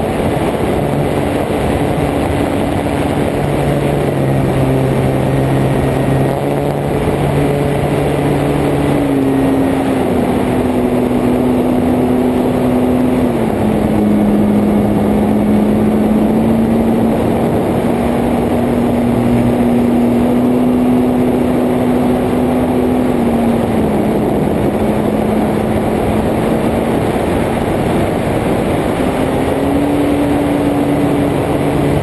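Onboard sound of a Carbon-Z Cub RC plane in flight: its electric motor and propeller hum under a heavy rush of air over the camera. The pitch steps down about a third of the way in and again about three-quarters in, then rises near the end as the throttle changes.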